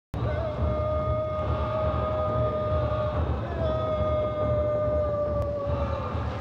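Opening soundtrack: two long held notes of one pitched, call-like tone, each about three seconds, with a brief gap between them. The second note rises slightly at its start and sags at its end. Both sit over a low, pulsing rumble.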